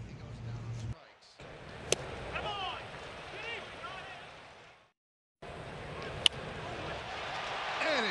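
Ballpark crowd murmur from the game broadcast, with two sharp cracks of a baseball being struck or caught, about two seconds in and about six seconds in. The sound drops out to silence twice, briefly, near one second and five seconds.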